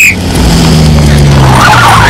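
A bus engine running, its low hum slowly falling in pitch.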